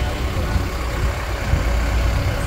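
Low, steady engine rumble with a broad background haze.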